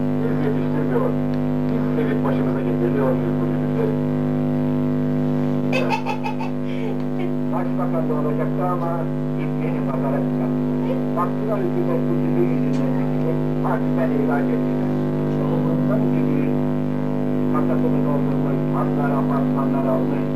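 A loud, steady electrical hum on the recording, a drone at several fixed pitches that never changes, with voices babbling over it. There is a brief crackle about six seconds in.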